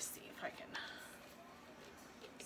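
A sharp click, then faint handling sounds as the spray top is twisted off a bottle of liquid wax.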